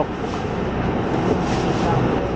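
Crowded city bus running: a steady rumble of engine and road noise.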